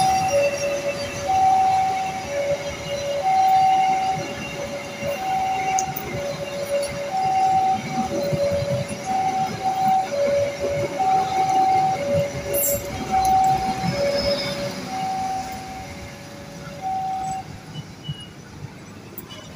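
Level-crossing warning alarm sounding a steady alternation of two tones, high and low, each held just under a second, over the rumble of an electric commuter train running past on the track. The alarm stops and the rumble fades near the end.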